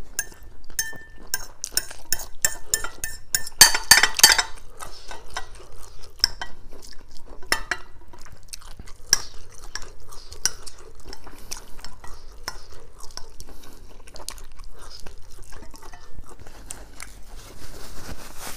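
Metal fork scraping and clinking against a ceramic bowl as noodles are forked up, a quick run of sharp clicks. The densest, loudest clatter comes about four seconds in.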